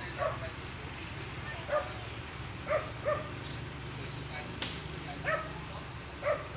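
A dog barking in short single yaps, about five spread unevenly across the stretch, over a steady low hum.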